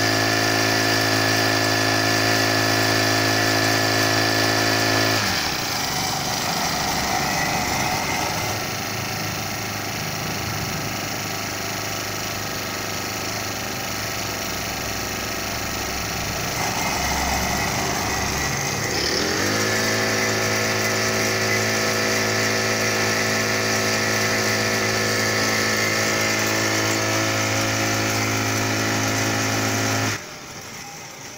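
Honda GX25 four-stroke engine on a Husqvarna T300RH cultivator running at high speed. About five seconds in its pitch drops sharply to a low, uneven running speed. Near nineteen seconds it revs back up to a steady high speed.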